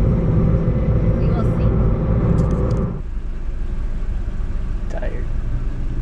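Road and engine noise inside a moving car's cabin, a steady rumble. About halfway through it drops abruptly to a quieter, steadier hum.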